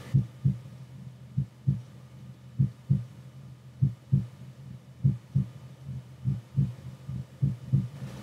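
A slow heartbeat: paired low thumps (lub-dub) about every 1.2 seconds, over a steady low hum.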